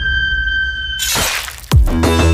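Horror sound-effect track: a steady high whistling tone over a low drone, cut off about a second in by a crash like shattering glass that fades away. Near the end a heavy electronic beat with deep falling booms starts.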